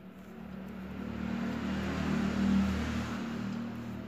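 A motor vehicle passing by, its engine hum and road noise swelling to a peak about two and a half seconds in and then fading away.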